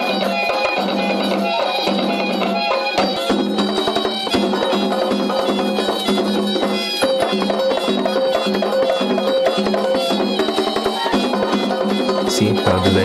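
Traditional Zaouli dance music: drumming with flutes playing short repeating phrases over held notes.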